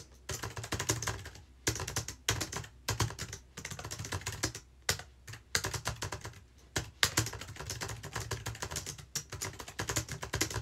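Fast typing on a low-profile computer keyboard, in quick runs of keystrokes broken by short pauses.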